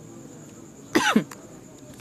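A man briefly clears his throat once, about a second in; the short sound falls in pitch.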